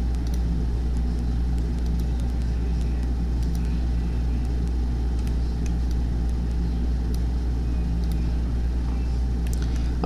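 A steady low electrical hum and background noise with a few faint, scattered clicks.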